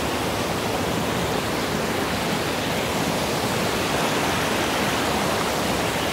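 A fast forest creek rushing over rocks in whitewater, a steady, unbroken wash of water noise.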